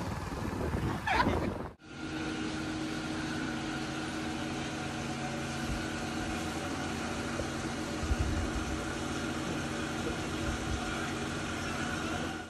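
Road noise from riding in wet street traffic for the first two seconds. Then, after a sudden cut, a steady machine hum with several held tones.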